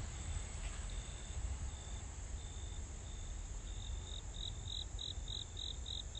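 Insects chirping: a repeated high chirp, about two a second at first, then louder and quicker, about three a second, in the last two seconds. A continuous high trill runs beneath it, along with a low rumble.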